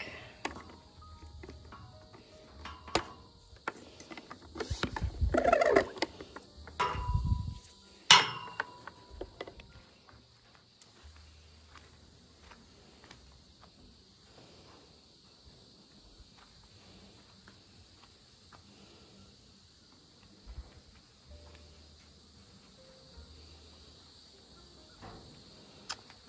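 Handheld garden pump sprayer being handled and pumped, with a run of squeaks and knocks in the first eight seconds and a sharp knock near eight seconds. A long quiet stretch follows while the stall floor is sprayed. A steady high chirring of crickets runs underneath.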